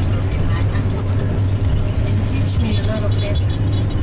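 Steady low drone of a bus engine and road noise heard inside the cabin of a moving bus, with a woman's voice faint over it.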